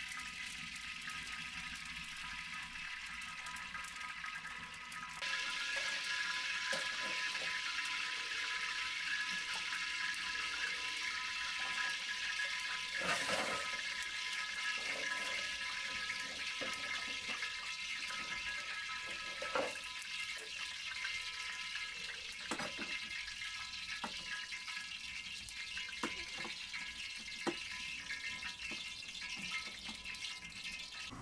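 Open wood fire burning under a pan of oil and kettles: a steady hiss with a few thin whistling tones, getting louder about five seconds in, and scattered crackles and pops throughout, the sharpest about a third of the way in.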